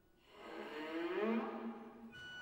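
A swelling, hissy sound with a rising pitch glide, in a contemporary chamber-ensemble piece between bowed-string passages; a low steady tone comes in near the end.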